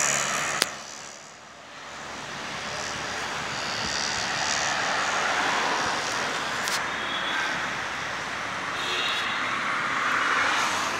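Steady rush of road and traffic noise heard from a moving car, with tyres and wind. A sharp click comes about half a second in, and the noise dips briefly about a second in before building back up.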